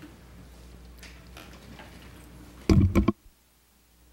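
Quiet room tone with faint ticks, then a brief loud thump about three seconds in, after which the sound drops suddenly to near silence.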